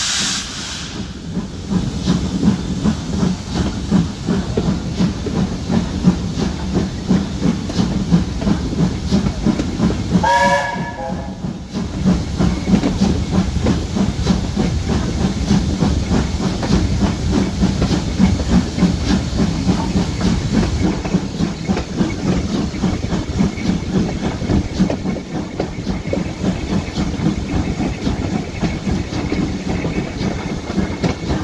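BR Standard Class 4 steam locomotive working a train at speed, its exhaust and the wheels on the rails giving a steady rhythmic beat. A hiss of steam dies away in the first second, and a short whistle blast of about a second sounds about ten seconds in.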